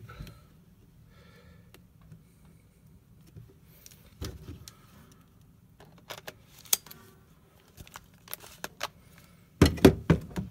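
Scattered small metallic clicks and knocks from a camera lens and a Nikon camera body being handled and fitted together, with the loudest cluster near the end.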